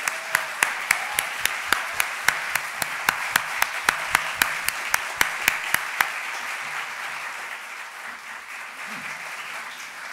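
Audience applauding in a large hall, with one pair of hands clapping close to the microphone at about three claps a second until about six seconds in. The applause then thins toward the end.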